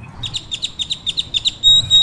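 A songbird singing: a quick run of about ten short, down-slurred chirps, roughly eight a second, then a high whistle held near the end.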